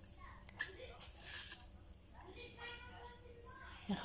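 Fingers mixing chopped fresh herbs and red onion by hand on a plate: soft, quiet rustling and squishing with a few small clicks. A faint voice is heard in the background in the second half.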